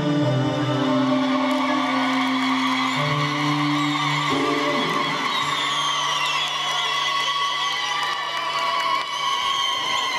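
Choral music with backing, held on long sustained notes that change twice and stop near the end. High wavering cries sound over it in the middle.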